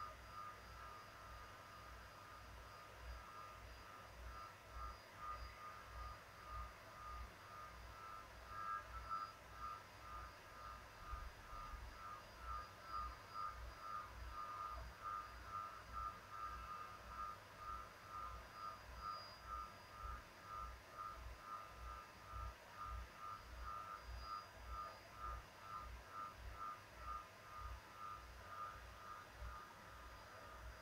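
Faint electronic beeping, about two beeps a second at one steady pitch, with a low pulse keeping the same pace throughout.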